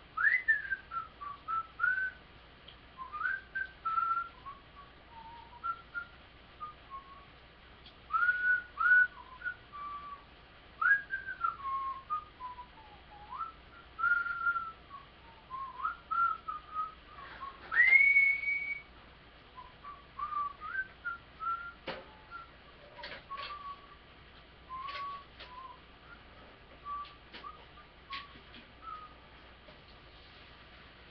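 Whistling: a meandering tune of short sliding notes, with one longer rising note held for about a second just past the middle. A few sharp clicks fall between the phrases.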